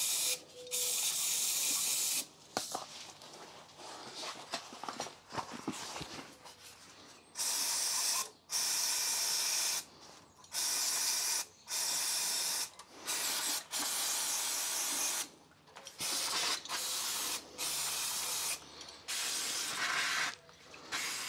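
Aerosol cleaner can with a straw nozzle spraying in about a dozen short hissing bursts, each half a second to two seconds long, with a pause of several seconds after the first two.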